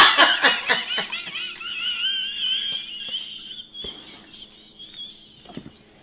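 Women laughing: a high-pitched, wavering laugh that fades out about three and a half seconds in, followed by a few faint knocks.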